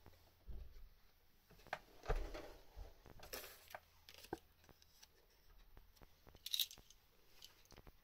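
Faint rustling, taps and short scrapes of a tarot deck being handled and shuffled while a card is drawn.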